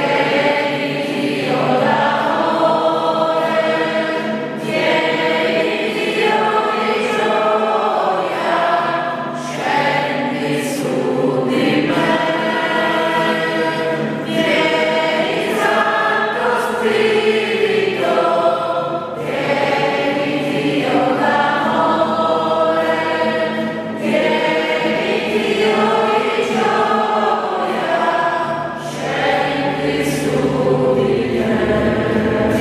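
A group of voices singing a Christian worship song together over a steady instrumental accompaniment, in phrases of a few seconds each.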